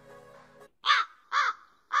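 Crow cawing three times, harsh and evenly spaced about half a second apart, after faint background music fades out. This is the kind of caw dropped in as a comic sound effect for an awkward pause.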